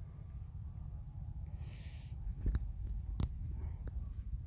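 Low rumble of wind and handling noise on a handheld phone microphone as it is carried along, with a brief rustle about one and a half seconds in and three light clicks spaced under a second apart in the second half.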